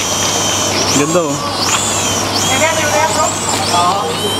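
Small toy quadcopter drone's propellers whining at a high pitch that swings up and down several times as it hovers and manoeuvres.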